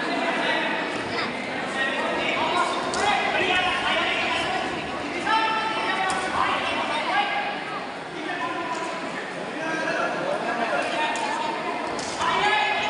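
Several people's voices talking and calling out in a large hall, with a few short sharp knocks.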